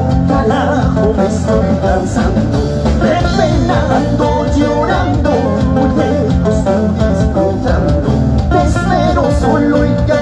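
A live band playing amplified music through a stage PA, with guitar and group vocals over bass and drums, steady and loud.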